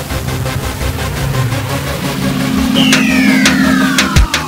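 Electronic music with a steady beat, mixed with a car engine sound effect in a channel logo sting; from about three seconds in, a whine falls steadily in pitch.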